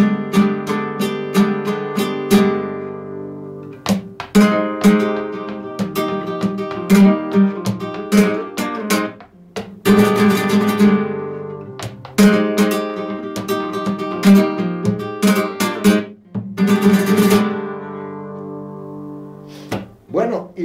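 Nylon-string flamenco guitar with a capo playing a bulería passage por arriba in E: strummed chords with rasgueados and sharp percussive strikes, broken by short pauses between phrases. The playing stops shortly before the end.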